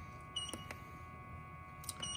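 Key presses on a handheld OBD-II scan tool as its menus are stepped through: a few short clicks, three in the first second and one near the end, some with a brief high beep, over a faint steady hum.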